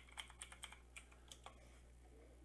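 Faint typing on a computer keyboard: about ten quick keystrokes as a short word is typed, stopping about a second and a half in.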